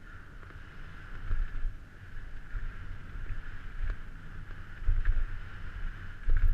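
Wind buffeting the microphone of a helmet-mounted camera on a downhill mountain bike at speed, a gusty low rumble that is loudest about five seconds in. Under it, a steady hiss from the tyres and bike rolling over the dirt trail, with a few sharp clicks and knocks from the bike over rocks and roots.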